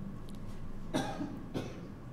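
A person coughing or clearing the throat once, about a second in, followed by a smaller one over half a second later.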